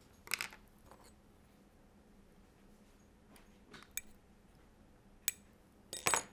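A handful of short, sharp clicks and taps from small repair tools and the phone's frame being handled. They come as a small cluster at the start, then single clicks spaced a second or more apart, the sharpest about five seconds in, over a quiet room.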